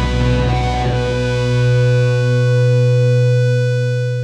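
Rock band ending a song: drums and cymbals hit for about the first second, then electric guitars and bass hold one final chord that rings on and starts to fade near the end.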